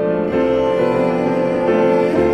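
A cello bowing long held notes with piano accompaniment, in a slow classical duo; the notes change about a third of a second in and again near the end.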